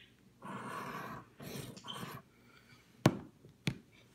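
Scratch-off lottery ticket being scratched, its coating rubbed off in two short rasping spells. Two sharp clicks follow about three seconds in, half a second apart.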